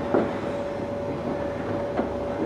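Room tone: a steady thin whine of one pitch over an even background hiss.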